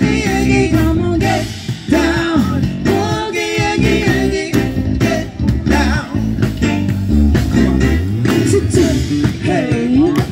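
Live band music with singing, guitar and a steady drum beat.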